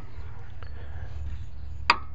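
One sharp metallic clink near the end, with a brief high ring after it, as a steel lift bar meets the weight-distributing hitch's chain bracket, over a low steady background rumble.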